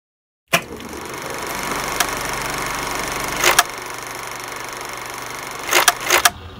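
Film-teaser sound design. A sudden hit about half a second in, then a steady hissing noise with sharp clicks about two seconds in, twice around three and a half seconds, and a pair near the end.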